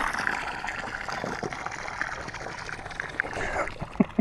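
Water pouring out of a Sun Dolphin kayak's drain plug hole in a steady stream and splashing onto grass. The hull is draining water it took on, which the owner suspects leaked in past a half-closed plug.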